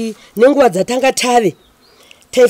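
A woman speaking in two bursts, with a short pause just before the end.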